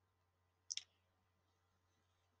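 Near silence with a faint low hum, broken by one brief double click just under a second in.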